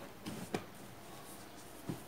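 Faint handling noise of a crocheted rug being picked up and moved by hand, with two soft clicks, one about half a second in and one near the end.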